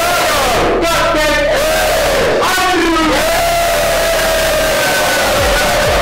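A group of voices shouting and calling out together, ending in one long, drawn-out cry held for a couple of seconds in the second half.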